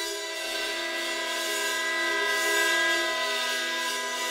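Ensemble of wind instruments holding a steady chord of sustained notes, including a trombone played with a straight mute; a lower note comes in about half a second in and the chord swells slightly near the middle.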